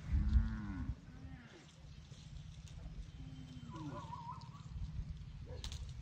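An animal's low call in the first second, the loudest sound here, followed at once by a shorter one, then fainter pitched calls about three to four seconds in, over a steady low hum.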